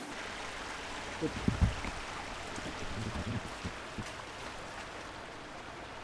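Steady rushing of a fast-flowing river.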